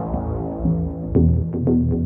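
Background electronic music: sustained synthesizer chords over a low, throbbing bass, with light percussion ticks coming in about a second in.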